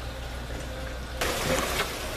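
Water running down inside a PVC aquaponics grow tower and splashing onto a wicking insert, becoming a louder rush a little past a second in. A steady low hum runs underneath.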